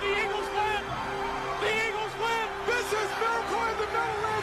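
A man's excited play-by-play radio call of a game-winning touchdown, shouted in short bursts over a steady held tone underneath.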